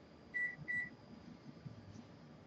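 Two short electronic beeps at one high pitch, close together, in the first second.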